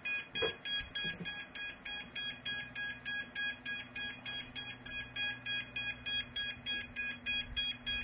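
Tyro129 quadcopter beeping steadily and rapidly, about three short high beeps a second, because its throttle is not calibrated yet.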